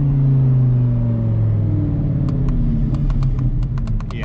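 Audi R8's V10 engine heard from inside the cabin, running steadily while its pitch slowly falls as the car coasts. In the last couple of seconds comes a run of light clicks: the downshift paddle being pulled again and again without the gearbox shifting down, which the owner puts down to an electrical issue or a paddle that needs replacing.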